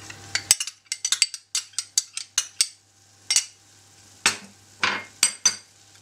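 Metal spoon clinking and scraping against a small bowl and a stainless steel saucepan as sour cream is spooned in and stirred into a cocoa-and-butter mixture: a dozen or so sharp, irregular clinks.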